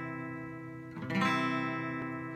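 Acoustic guitar accompaniment between sung lines: a strummed chord ringing out, and a second chord strummed about a second in.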